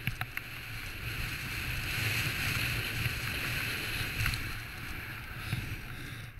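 Snowboard sliding and carving over packed snow: a steady scraping hiss that swells in the middle, over low wind buffeting on the helmet camera's microphone. A couple of sharp clicks right at the start.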